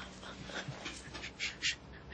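A woman crying during an embrace: quiet broken sobbing breaths, with two short sharp intakes of breath near the end.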